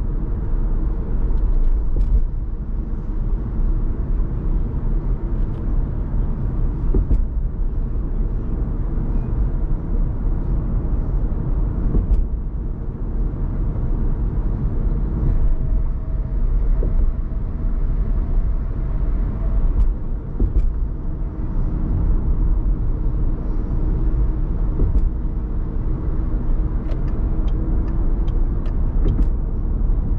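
Car cruising at highway speed: a steady low rumble of tyres on the road and the engine.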